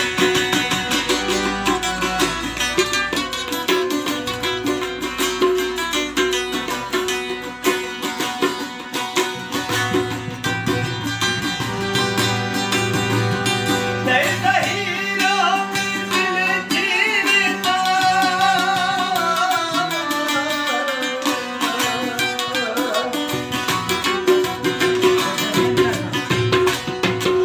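Balochi folk song: tabla drumming and a strummed long-necked wooden lute over harmonium chords, with a man's singing voice entering about halfway through in wavering, ornamented phrases.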